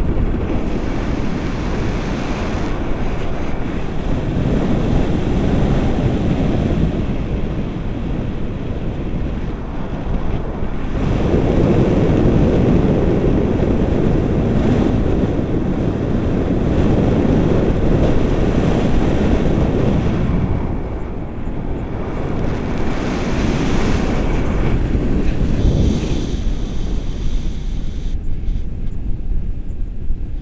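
Wind rushing over an action camera's microphone in paragliding flight, a loud, steady roar that swells and eases, strongest through the middle and dipping briefly about two-thirds of the way in.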